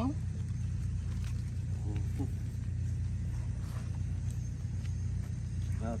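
A steady low rumble, with faint brief voices about two seconds in.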